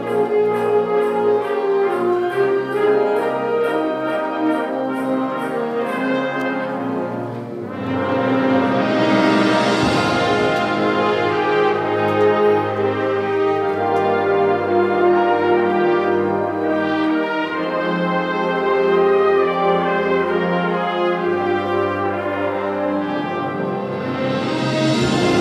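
Concert band of trumpets, trombones, saxophones, low brass and percussion playing a full, sustained passage, with a light regular cymbal ticking in the first few seconds. After a brief dip about seven seconds in, the band comes back louder under a cymbal swell.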